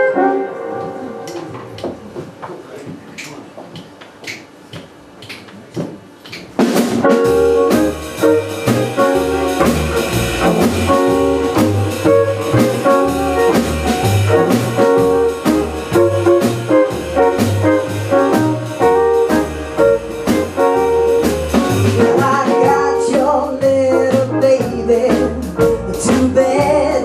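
Live blues band of electric guitar, double bass and drum kit. A few seconds of near-quiet with a few soft ticks, then the whole band comes in together about six and a half seconds in and plays a steady, rhythmic groove over a stepping bass line.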